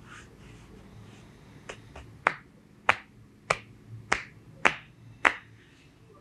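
A run of sharp snaps made by hand: two faint ones, then six loud ones at an even pace of about one every 0.6 seconds.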